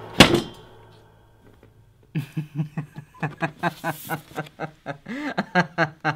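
A single loud thump just after the start. Then, from about two seconds in, a man laughs in a long run of quick, rhythmic 'ha' bursts, about three or four a second.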